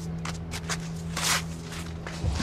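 Footsteps on snowy ground, a handful of separate steps, the loudest about a second and a half in.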